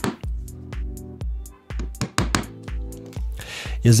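A hammer tapping a screw held point-first against a cabinet panel, a quick series of light metallic taps punching starter marks for screws, over background music with a steady bass beat.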